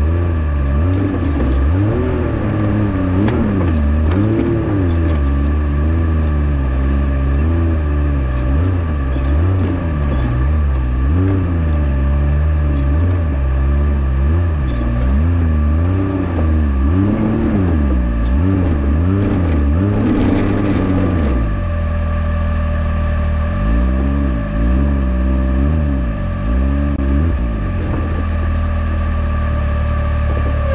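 Can-Am Maverick X3 turbo three-cylinder engine revving up and down over and over as the side-by-side crawls up a rocky rut, with a steady whine over it. About two-thirds of the way through the revs fall back, then rise and fall a few more times.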